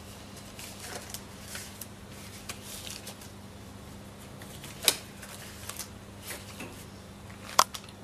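Sterile surgical gloves being pulled on and plastic and paper wrappings handled: faint rustling with scattered light clicks and two sharp snaps, about five seconds in and near the end, over a low steady hum.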